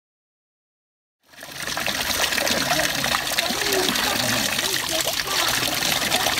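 Spring water pouring steadily from a carved spout of a stone fountain and splashing into the basin below, fading in about a second in after silence.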